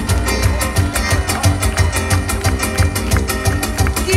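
Live band music in an instrumental passage between sung lines, with a steady beat and strong bass.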